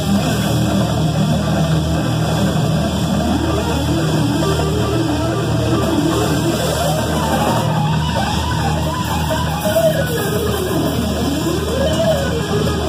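Distorted electric guitar played through Marshall amplifiers: fast neo-classical lead runs that sweep up and down in pitch over a sustained low backing.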